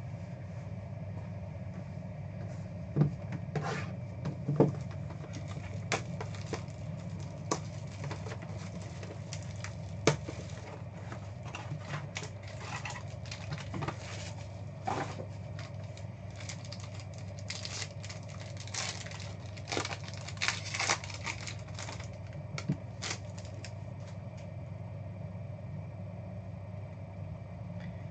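Scattered clicks, taps and crinkles of a trading-card box and its foil-wrapped pack being opened and handled, over a steady low hum.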